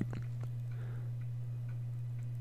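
Steady low hum with a few faint ticks, the background noise of the recording between spoken words.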